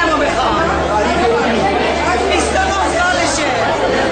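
Several people talking over one another: a woman speaking into a handheld microphone amid crowd chatter.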